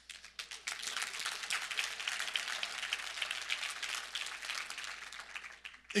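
Congregation applauding: many hands clapping together, starting about half a second in and dying away just before the end.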